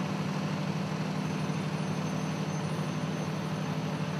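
Fire truck's diesel engine running steadily: a constant low drone with no change in pitch.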